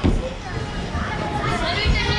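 Children's voices and chatter, with a high child's call near the end. Two low thuds, one at the start and one near the end, come from kids landing on trampolines.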